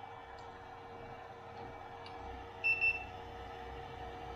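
Handheld infrared thermometer giving a short, high-pitched beep about two-thirds of the way in as it takes a reading, over a steady background hum.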